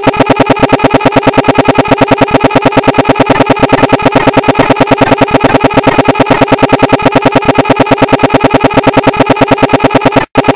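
A short snippet of sound looped digitally about a dozen times a second, giving a loud, steady, stuttering buzz of one pitch, like a frozen audio glitch.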